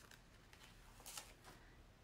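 Near silence, with a faint, brief rustle about a second in as a plastic silk-screen transfer sheet is handled.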